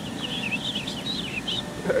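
A small songbird singing a fast, warbling run of high chirps that stops about one and a half seconds in, over a steady low outdoor background hum.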